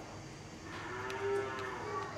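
A cow mooing faintly: one long call that rises and then falls, beginning about half a second in.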